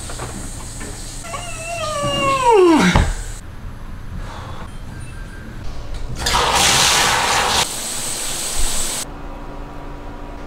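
A loud whining sound falling steeply in pitch over about two seconds. A few seconds later comes a shower tap turned on, with water rushing into a bathtub for about a second and a half, then running more softly.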